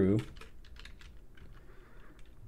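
Typing on a computer keyboard: a quick run of faint key clicks as a line of code is entered.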